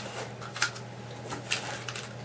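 A few light clicks and taps as a polymer Blackhawk SERPA holster and an airsoft 1911 pistol are handled, over a steady low hum.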